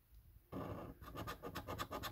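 Scratching the coating off a £1 Lucky Roll paper scratchcard, in rapid short strokes that start about half a second in.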